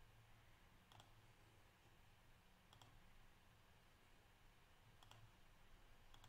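Near silence with three faint, sharp clicks about two seconds apart, like clicks made while working a device's settings.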